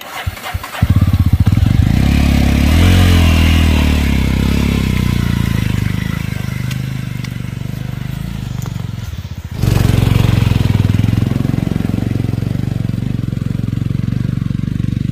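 Motorcycle engine starting about a second in, revving up, then running steadily as the bike is ridden off along a rough track. There is a sudden break and change in the sound about ten seconds in.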